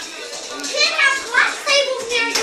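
Children's high-pitched voices, excited shouting and chatter of kids at play, overlapping one another.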